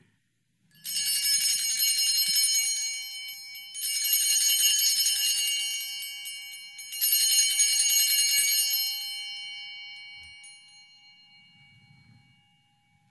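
Altar bells (sanctus bells) shaken three times, each a bright jingling peal of about two seconds that rings on and fades, the last dying away slowly near the end. They are rung at the elevation of the host, marking its consecration.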